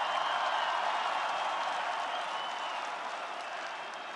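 Large stadium crowd applauding, the applause slowly dying down.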